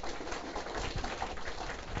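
Audience clapping: a dense, even patter of many hands.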